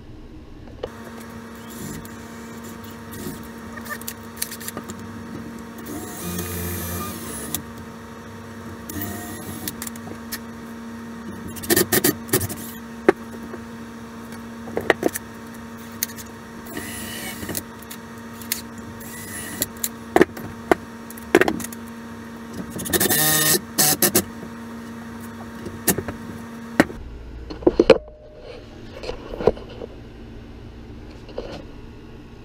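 A cordless drill running in several short bursts, drilling and driving a deck screw at an angle into a wooden board, with the loudest and longest run about three quarters of the way through. Sharp clicks and knocks of tools and wood being handled come between the runs, over a steady hum.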